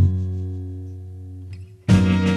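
Instrumental break in an acoustic song: one guitar chord over a low bass note, struck once and left to ring, fading away over nearly two seconds. It drops almost to silence just before the end, as the full band comes back in.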